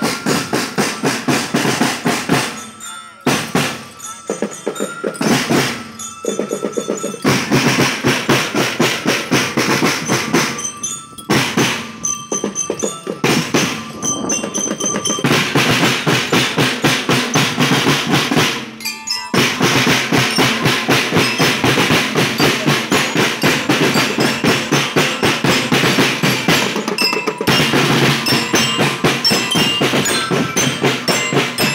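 School marching drum band playing: snare drums beat a fast, steady rhythm with rolls, while bell lyres ring notes over it. The beat stops briefly several times in the first twenty seconds, then runs unbroken.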